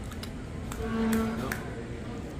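A man's drawn-out closed-mouth "mm-hmm" of agreement while eating, held on one steady pitch for about half a second in the middle, with a few faint clicks.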